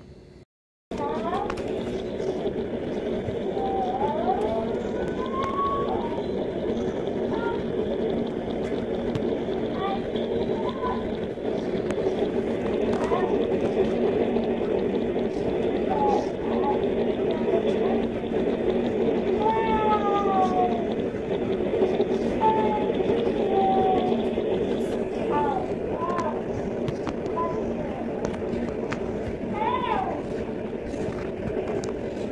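Sound of a televised swimming race: voices shouting and calling over a dense, steady din. It cuts in abruptly about a second in, after a moment of silence.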